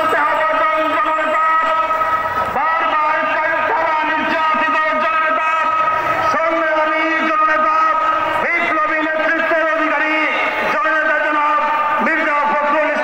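A man's voice over a loudspeaker, going on without pause in long, drawn-out held tones with occasional slides in pitch.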